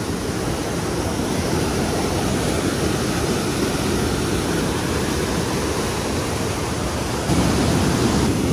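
River rapids: a cascade of white water rushing over and between rocks in a steady, loud, unbroken noise, a little louder in the last second.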